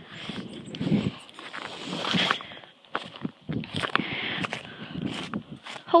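Footsteps crunching through snow, an uneven run of steps.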